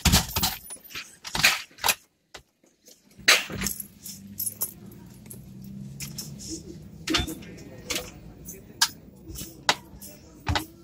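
A run of metallic jingles and clicks, with a steady low hum from about three to seven seconds in.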